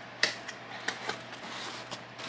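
A cardboard box being handled by hand: one sharp knock about a quarter second in, then a couple of fainter clicks and light rustling.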